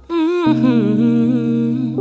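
A woman's wordless humming, sliding and wavering in pitch, over sustained chords from a Nord Electro 6 stage keyboard playing an electric piano sound; the chords come in about half a second in, after a brief dip at the start.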